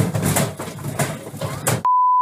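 A washing machine standing on a trampoline shaking violently on an unbalanced spin, with repeated bangs and clattering over a low rumble, from the centrifugal forces of the spinning drum. Near the end it cuts off abruptly into a loud, steady, high test-tone beep.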